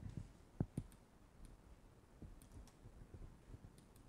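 Faint, sparse clicks of a computer keyboard and mouse as text is deleted from a web form, a handful of short taps with the sharpest about half a second in.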